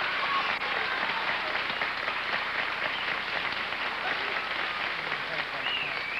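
Studio audience applauding steadily throughout, with faint voices underneath.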